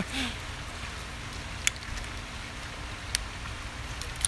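Quiet outdoor background: a low steady rumble with a faint hum, broken by two brief sharp clicks about one and a half and three seconds in.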